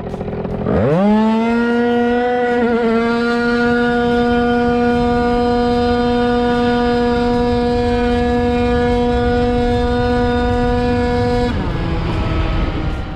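Tuned 94cc Malossi RC-One two-stroke scooter engine at full throttle, recorded onboard: about a second in the revs shoot up, then the engine holds one steady high pitch while the speed climbs, the CVT keeping the revs constant. Near the end the pitch falls as the throttle comes off.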